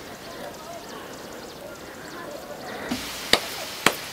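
Two sharp knocks about half a second apart near the end, over faint background voices.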